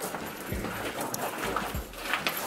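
Footsteps of a group walking on a gravel path, with a few low thuds among the shuffling.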